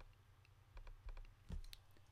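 Faint clicks of a computer mouse and keyboard: a cluster of quick taps about a second in, then a few more around a second and a half in.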